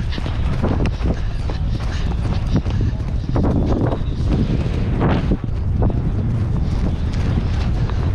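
A pony galloping on turf, its hoofbeats thudding under steady wind rumble on the rider-worn microphone. The rider's voice breaks in a couple of times around the middle.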